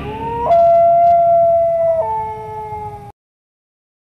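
A long howling cry, rising at first and then held on one pitch, dropping to a lower held note about two seconds in, and cut off abruptly after about three seconds.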